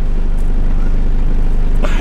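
Land Rover Defender 110's engine idling with a steady low hum, heard from inside the cab.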